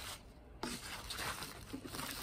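Disposable paper table mat rustling and crinkling faintly as a hand lifts and pulls at it, starting about half a second in.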